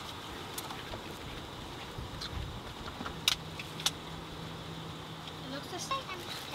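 Steady low background rumble of a car, with a low even hum joining about halfway through and a couple of sharp clicks soon after.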